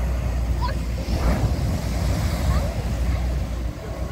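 Surf breaking on the beach with wind buffeting the microphone, a low steady rumble underneath; a wave swells up about a second in.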